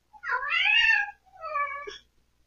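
A long-haired cat meowing twice: a long meow that rises and then falls, then a shorter one.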